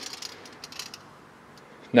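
A few faint clicks and a light rattle from a tape measure blade being pulled out, over low room noise.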